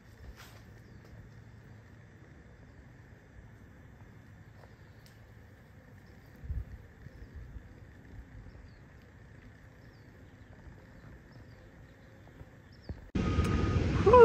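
Quiet outdoor garden ambience: a low steady rumble with scattered faint, short high chirps from small birds. About thirteen seconds in it cuts suddenly to a much louder steady noise.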